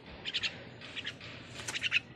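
A black bird chirping in three bursts of quick, high chirps, the last and loudest near the end.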